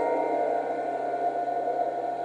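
A piano chord left to ring and slowly fade, with its notes held, before the next chord comes in.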